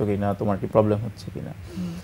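Only speech: a person talking steadily in a studio conversation, with no other sound.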